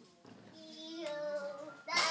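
A young child's voice in a drawn-out, sing-song vocalization that swells over about a second and a half, then breaks off just before the end.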